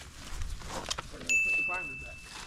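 A steady high-pitched electronic tone, a single held pitch, starts abruptly a little past halfway and holds, over faint talk.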